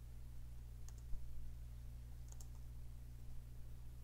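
A few faint computer keyboard keystrokes: one about a second in, with a low thump just after, and a quick pair a little past two seconds. A steady low electrical hum runs under them.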